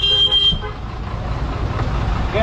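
A vehicle horn honking in short repeated blasts that stop about half a second in, over a steady low rumble of engine and road traffic.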